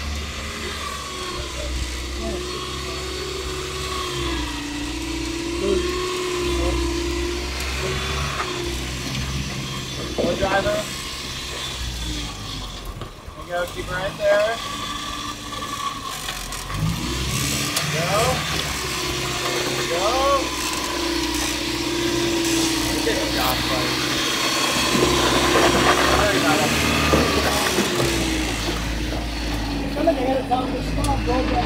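1988 Toyota 4Runner's engine running at low crawling speed with a steady drone that dips and picks up a few times as it climbs over boulders in low range. People's voices are heard in the background.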